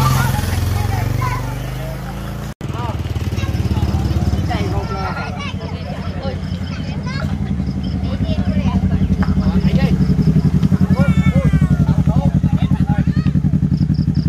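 Yamaha sport motorcycle engine running at low speed, a steady rapid low pulse that grows louder in the second half as the bike comes close, with the voices of onlookers, children among them, over it.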